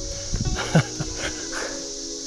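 Background music with steady sustained notes over an even high buzz of insects, with a short falling vocal sound from a person about three-quarters of a second in.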